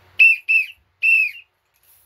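Three shrill whistle blasts blown at the mouth, two short and a longer third, each dipping slightly in pitch as it ends, like a referee calling time to signal the end of the break.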